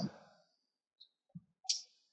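Near silence broken by a few faint, short clicks from a computer mouse.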